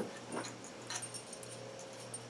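Faint, scattered light metal clinks of a steering wire and idler sheave assembly being handled.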